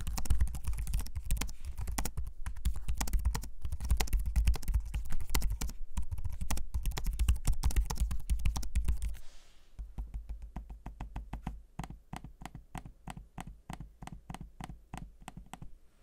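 Typing on the 2022 Asus ROG Zephyrus G14 laptop keyboard: rapid, irregular key clicks. About nine seconds in the typing gives way to quieter, evenly spaced clicks, about four a second, from the glass trackpad.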